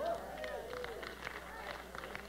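Faint laughter and low voices that trail off within the first second, leaving quiet background noise.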